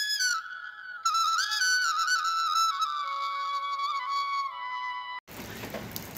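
A solo flute melody: one ornamented line that slides and drifts gradually lower in pitch, cutting off suddenly about five seconds in.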